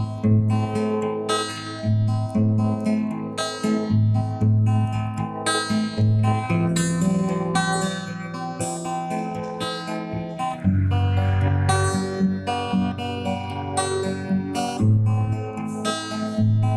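Instrumental music led by acoustic guitar: picked chords in a steady rhythm over a deep bass line, with no singing.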